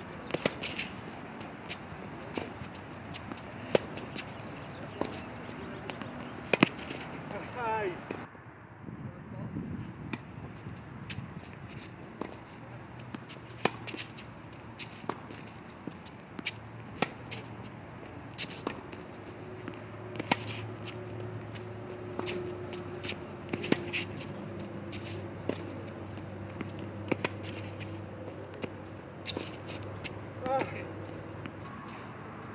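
Tennis rally on a hard court: balls struck by the rackets and bouncing on the court, making a long irregular run of sharp pops a second or so apart. A soft low hum runs underneath from about a third of the way through.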